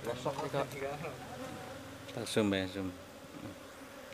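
Steady buzzing of a cluster of Asian honeybees (Apis cerana), with a man's voice over it, loudest a little after two seconds in.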